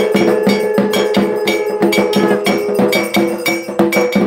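Puja percussion: metal bells and a bell-metal gong struck rapidly in a steady rhythm, each stroke ringing at the same few pitches. A held steady tone dies away about half a second in.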